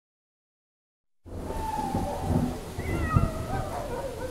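Cartoon thunderstorm sound effect that starts suddenly after about a second of dead silence: a steady rain-like noise with a rumble underneath and a few wavering cries over it.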